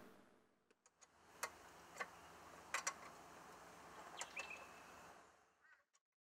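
Near silence: faint room tone with a few soft clicks and one brief, faint high chirp.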